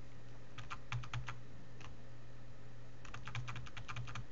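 Computer keyboard keys tapped in two quick bursts of clicks, with a single click between them, as the alt-tab window switcher is cycled. A steady low hum runs underneath.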